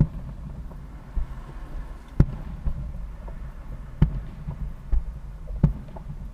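Distant aerial firework shells bursting: about five dull booms, the loudest about two seconds in, over a low rumble.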